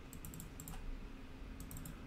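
Light computer keyboard keystrokes, faint: a quick run of clicks near the start and another short run near the end.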